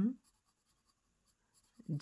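Faint scratching of a graphite drawing pencil shading on paper, in the quiet stretch between two spoken words.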